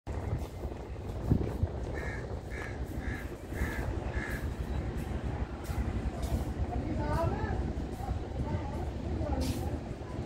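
Low, steady rumble of a passenger train rolling slowly out of a station, with a sharp knock about a second in. Over it, a crow caws five times in quick, even succession.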